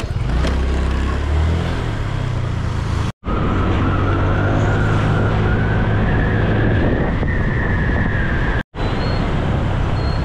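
Motor scooter running along a road. Through the middle stretch a whine rises slowly in pitch. The sound drops out briefly twice, about three seconds in and again near nine seconds, at cuts.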